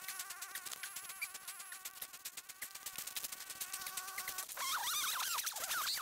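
A flying insect buzzing steadily, its pitch wavering slightly, over light crackling. About four and a half seconds in, a louder, higher, warbling sound takes over for the last second and a half.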